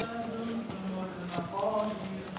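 Hurried footsteps on pavement, a few sharp steps, under a man's voice chanting in long held notes.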